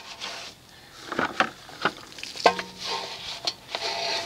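Soft EZ Detail wheel brush scrubbing the inside of a soapy alloy wheel barrel, with wet rubbing strokes in an irregular rhythm and a few sharp ticks as it works between the spokes.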